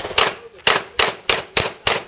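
A handgun fired in a rapid string of six shots, about a third of a second apart and quickening slightly.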